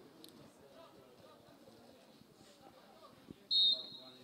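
Faint voices carrying across the pitch, then, about three and a half seconds in, one short blast of a referee's whistle signalling the restart of play.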